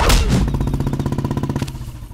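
A hit lands at the very start. Then a motorcycle engine runs with a steady, rapid putter and cuts out just before the end.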